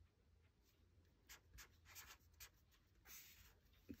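Faint strokes of a felt-tip marker writing digits on a paper notepad: a few short scratches beginning about a second in.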